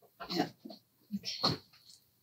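Mostly speech: a woman's short spoken words with brief pauses between them.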